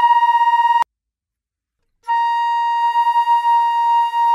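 Concert flute holding a B-flat tuning note. The first note breaks off abruptly under a second in; after about a second of silence the same note sounds again and is held, its loudness wavering.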